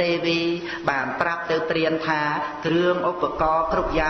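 A man chanting in a sing-song intonation, holding long notes at a steady pitch between quicker syllables: a Khmer dhamma teacher's recitation.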